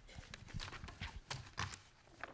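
Faint, irregular soft knocks and clicks of handling noise near a table microphone, several light taps in quick succession with no rhythm.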